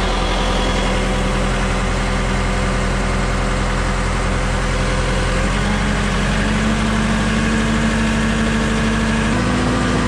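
Engine of a Schwing SP 500 trailer concrete pump running steadily, its pitch stepping up a little about halfway through and again near the end as the engine speed is raised.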